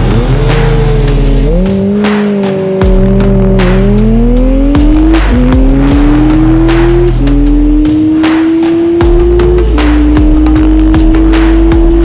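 Motorcycle engine accelerating hard down a drag strip: its pitch climbs in each gear and drops sharply at upshifts about five, seven and nine and a half seconds in. Background music with a steady beat plays underneath.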